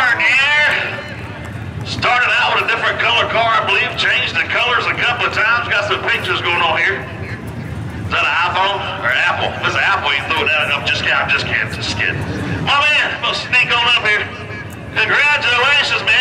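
People talking, with a man's voice most prominent, broken by a few short pauses.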